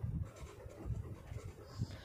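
A pen drawing a line on paper: the tip scratching faintly as an arrow is drawn, with soft, irregular low bumps from the hand and the paper.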